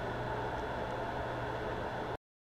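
Steady background hiss with a low, even electrical hum, unchanging throughout.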